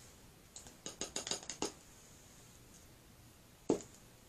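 A quick run of light clicks and taps about a second in, then a single louder knock near the end: a small glitter jar being handled and set back down on the worktable.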